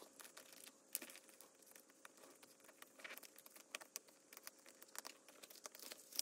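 Faint crinkling and light clicks of clear plastic cash-envelope pockets being flipped and handled, many small sounds scattered throughout.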